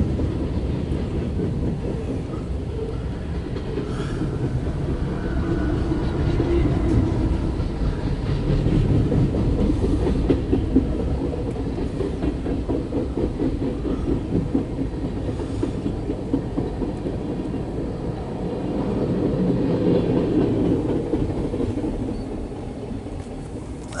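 A mixed freight train's boxcars and tank cars rolling past at close range, heard from inside a vehicle: a steady low rumble of wheels on rail, with dense clicking as the wheels run over the rail joints.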